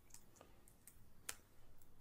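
Faint computer keyboard keystrokes: a few scattered key clicks, one louder about a second and a quarter in.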